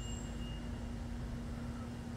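A steady low mechanical hum, one even tone over a low rumble, like a motor or engine running.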